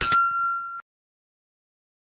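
Notification-bell sound effect of a subscribe-button animation: a click-like strike and a single bright bell ding that rings for under a second and then cuts off.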